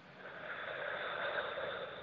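A person's slow, deep breath, swelling and fading over about two seconds: a deliberate deep breath taken on instruction in a breathing exercise.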